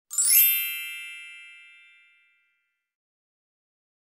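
A single bright chime, a cluster of high ringing tones, sounds once just after the start and fades out over about two seconds.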